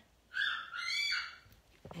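Felt-tip marker squeaking on paper while a dot is coloured in: a high squeak of about a second in two strokes.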